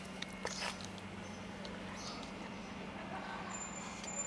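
A cat eating dry cat food, a few short crunches in the first second, over a steady low hum.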